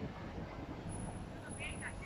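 Outdoor city background: a steady low rumble of distant traffic, with a few short bird chirps near the end.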